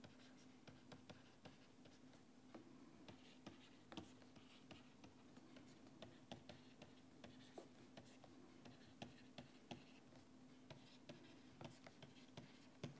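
Faint, irregular taps and scratches of a stylus writing on a pen tablet as an equation is written out stroke by stroke, over a steady low hum.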